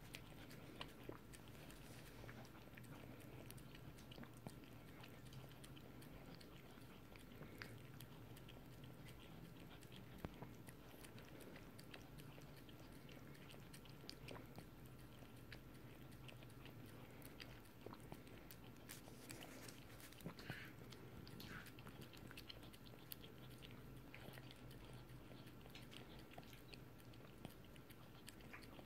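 Faint, scattered wet licking and smacking of a Yorkshire terrier licking ice cream from a cone, with soft little clicks from its tongue and mouth.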